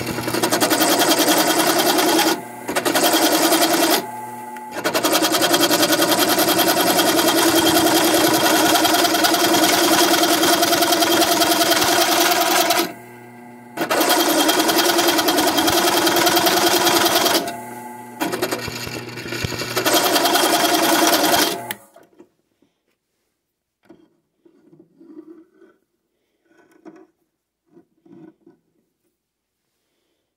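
Drill press driving a reground Milbro circle cutter into aluminium plate: a loud, steady metal-cutting noise that breaks off briefly four times and stops a little over 20 seconds in. The single-point bit, reground with a hook so that it cuts instead of scraping, is catching and taking chips.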